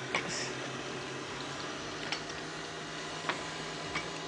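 A few light clicks and knocks as a stand mixer's steel bowl is handled and fitted, over a steady low hum.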